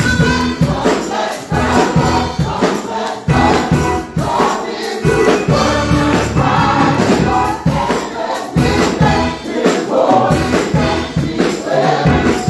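Gospel praise team singing together over live music with a steady beat.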